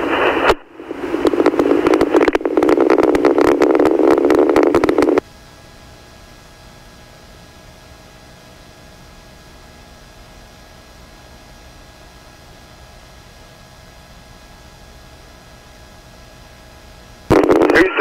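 Two-way radio channel: an open transmission of harsh, narrow-band static for about five seconds, which cuts off suddenly to a low steady hiss with faint hum tones. Near the end another transmission keys up.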